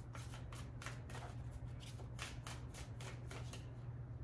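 A deck of cards shuffled overhand by hand: a quick run of soft flicks, about four a second, as packets of cards slide off one another.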